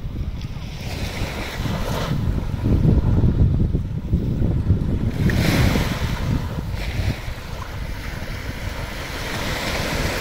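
Small waves breaking and washing up onto a sandy beach, the wash swelling and fading every few seconds, with wind rumbling on the microphone underneath.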